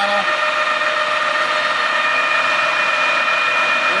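Harrison M400 geared-head engine lathe running, a steady mechanical whine with several constant high tones over a hiss from its motor and headstock gearing.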